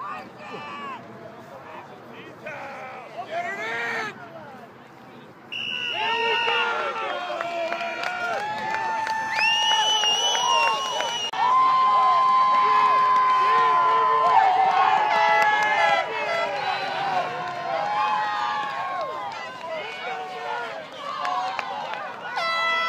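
Football crowd shouting and cheering as the game runs out, quieter scattered voices at first, then much louder about five seconds in. Several long steady horn-like tones sound over the cheering, the longest lasting about three seconds in the middle.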